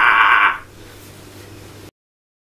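A man's loud, raspy laugh that ends about half a second in, leaving a faint low hum; the audio then cuts off to dead silence just before the end.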